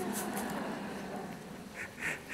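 Audience laughter: many people laughing together at a joke, dying down over about two seconds.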